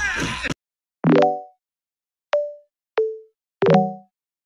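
A busy mix of sound cuts off abruptly about half a second in. Silence follows, broken by four short pitched sound-effect notes, each starting sharply and fading within about half a second. The second and third are single clear tones, the third lower than the second.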